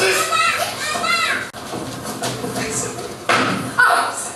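Actors' voices speaking on a theatre stage in a large hall for about the first second and a half, then quieter rustling movement and a sudden loud thump near the end.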